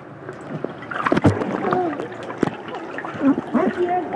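Swimming-pool water splashing and sloshing around a waterproofed tablet held at and just under the surface, with a thump about a second in.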